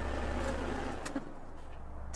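A car's engine running with a steady low hum that drops back about a second in, with a couple of faint clicks.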